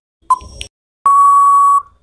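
Quiz countdown timer sound effect: a last short tick, then from about a second in a loud, steady electronic beep lasting under a second, signalling that time is up.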